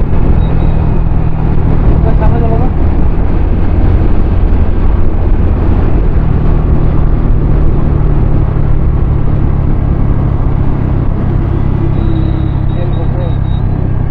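Wind rushing over the microphone of a TVS Ntorq scooter at road speed, with the scooter's single-cylinder engine running steadily underneath. The rumble stays constant throughout.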